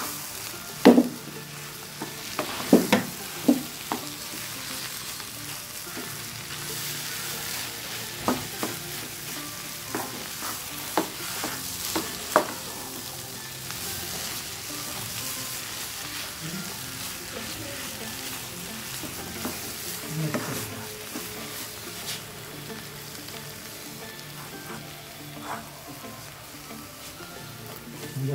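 A wooden spatula stirs and scrapes carrot halwa in a nonstick frying pan over a steady frying sizzle, as khoya is mixed in. Sharp knocks of the spatula on the pan come now and then, most of them in the first half.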